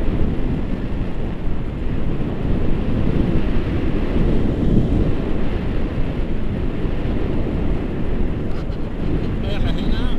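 Wind buffeting the microphone of a camera carried by a tandem paraglider in flight: a loud, steady, low rush of airflow.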